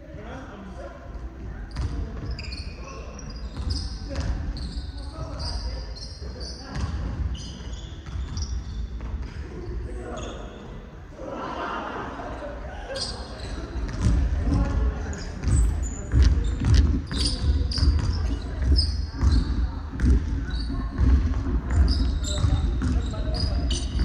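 Basketball bouncing and sneakers squeaking on a hardwood court in a large, echoing gym, with players' voices behind. It gets louder about halfway through as the play comes closer.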